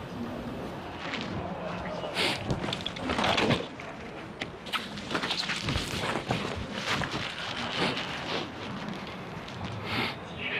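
A murmur of background voices with irregular knocks and rustles, such as footsteps and a backpack being handled.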